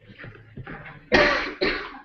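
A person coughing twice, about a second in, the first cough the louder, after some fainter throat noises.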